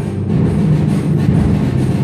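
Timpani played with mallets in a steady, unbroken low roll.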